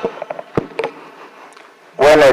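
A few short knocks and clicks from handling at a desk with a microphone, mostly in the first second, over a faint steady room hum.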